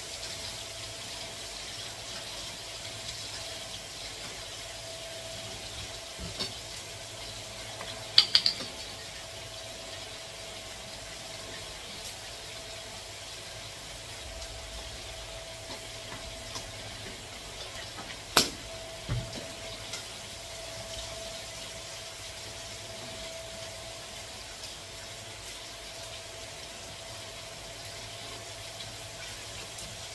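A fork clinks against a ceramic plate a few times, loudest in a quick cluster about eight seconds in and once more near eighteen seconds. Underneath is a steady low hiss with a faint constant hum.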